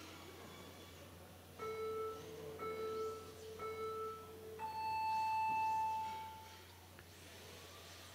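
Race start countdown signal: three short, identical low beeps about a second apart, then one long, higher beep that signals the start of the run.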